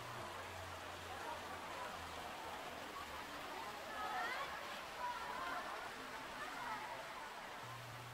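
Faint murmur of passengers' voices, a few brief snatches about halfway through, over a steady hiss in a crowded aerial tram car.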